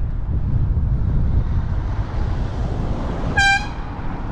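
Wind and road noise from riding a bicycle, with one short, high-pitched horn toot about three and a half seconds in.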